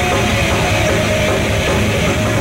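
Thrash metal band playing live, loud and steady: distorted electric guitars, bass and drums.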